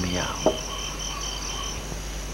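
Crickets chirping in an even, rapid pulse that stops shortly before the end, with a short click about half a second in.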